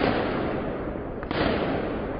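A sharp bang, followed by loud, rough street noise that surges again a little over a second later.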